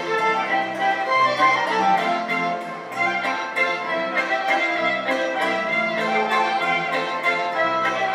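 Fiddle-led folk band music with a steady rhythmic pulse.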